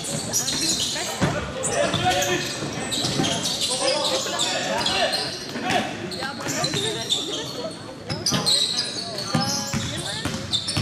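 Live basketball game sound echoing in a large sports hall: the ball bouncing on the court in irregular knocks, with players' and spectators' voices calling out throughout.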